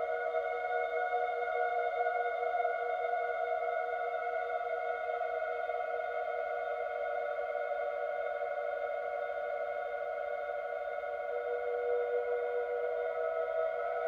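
Wooden end-blown flute played through a long, dense reverb: the held notes blend into a steady sustained wash of two or three overlapping pitches, with no distinct note onsets.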